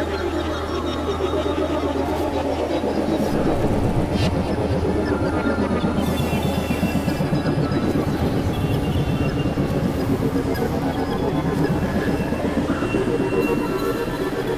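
Experimental electronic synthesizer drone music: a dense, rapidly fluttering noisy texture over a steady low drone. One pitch sweep glides down over the first few seconds and another rises near the end. The low drone drops out about a second before the end.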